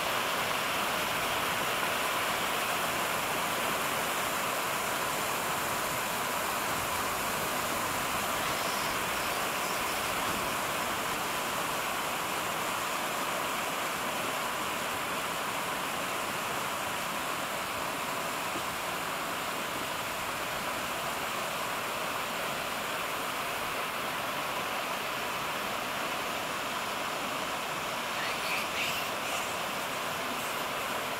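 Fast mountain stream rushing over rocks: a steady, unbroken rush of water.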